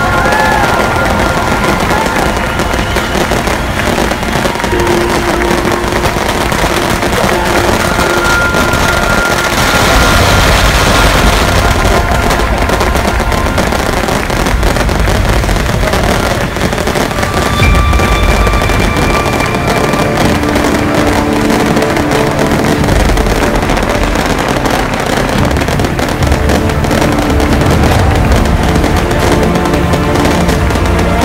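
Strings of firecrackers going off in a dense, continuous crackle, with music and some held tones over it.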